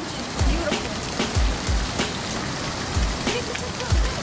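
Fountain water splashing steadily into its stone basin, broken by short low thumps that come mostly in pairs.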